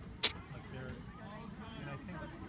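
A single short, sharp hissing burst about a quarter second in, over faint distant voices and a low steady rumble.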